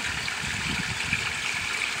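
Pond water splashing and trickling, kept moving by pumps running fast for circulation; a steady rush with an uneven low rumble underneath.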